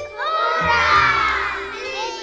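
A group of children shouting and cheering together over background music; the cheer swells about a quarter second in.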